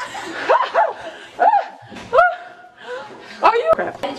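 A person's voice letting out about half a dozen short yelping, bark-like cries, each rising and falling in pitch.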